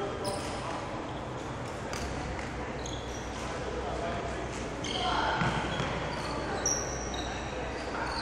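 Court shoes squeaking on a wooden indoor court floor: several short, high squeaks come and go throughout, with a louder cluster about five seconds in.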